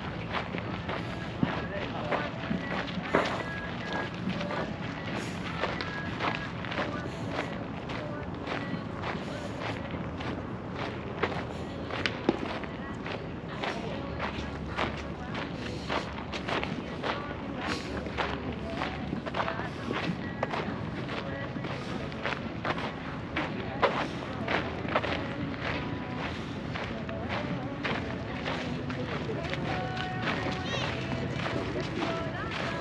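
Footsteps crunching on a dirt and gravel path, with people talking in the background.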